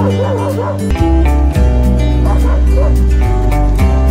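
Background music with a steady beat, loudest throughout, over a dog's short, wavering high-pitched cries in two bouts: at the very start and again about two and a half seconds in.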